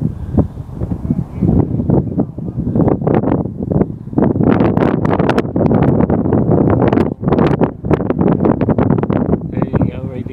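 Wind buffeting the microphone in loud, irregular gusts, growing heavier after about four seconds.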